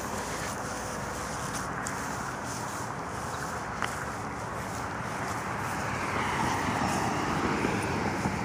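Road traffic noise from passing cars, an even rush of tyres on the road that swells as a car approaches near the end, with some wind on the microphone.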